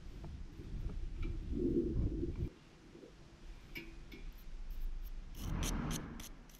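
A low rumble that cuts off abruptly about two and a half seconds in, then a small wire brush starting to scrub a black, carbon-fouled spark plug from a Honda Gorilla's engine with short scratchy strokes, heaviest near the end.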